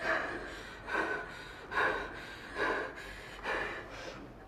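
A woman breathing heavily in gasping breaths, about one a second, five in all.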